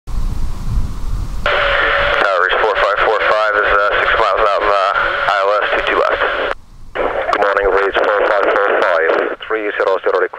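Air-traffic-control radio speech through a scanner, narrow and tinny, with a short break about six and a half seconds in. It is preceded by a second and a half of rumble and hiss before the transmission comes in.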